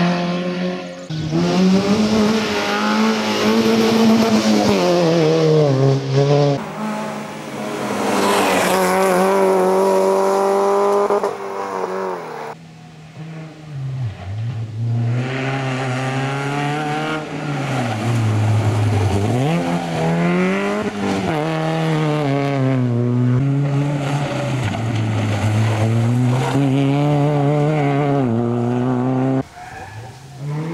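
Peugeot 206 rally car driven hard on a tarmac special stage, its engine revs climbing and dropping again and again through gear changes and lifts. There is a brief lull about halfway through, and the sound cuts off suddenly near the end.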